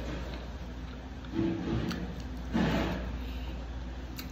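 Fingers picking sushi out of a clear plastic clamshell takeout tray, with light handling and rustling of the plastic and two brief louder handling noises about a second and a half and two and a half seconds in, over a steady low hum.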